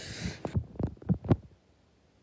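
A hiss that cuts off about half a second in, with a quick, uneven run of about six low thuds, the last ones loudest.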